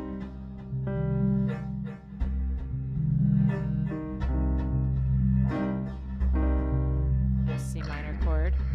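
A slow chord progression on keys over a deep sustained bass, the chords changing every second or so, with short notes struck above them. There is a brief hiss near the end.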